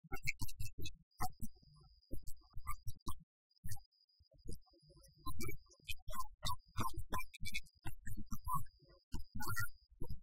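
A man talking, his voice choppy and garbled, broken by short dropouts, with a faint high tone coming and going.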